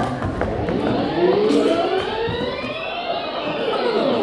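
A tape-rewind sound effect: many pitched tones sweep up together over the first couple of seconds and glide back down, marking a scene played in reverse.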